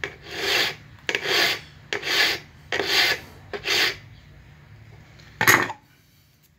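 Flat hand file pushed in forward strokes across the inner cutting edge of steel cutting pliers being sharpened. There are five even rasping strokes, a little under one a second, then a shorter, louder stroke near the end.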